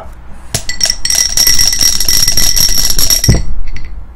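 A twenty-sided die clattering inside a clear dome cup that is shaken for about three seconds, with a steady high ringing over the rattle. It ends with a thump as the cup is set down.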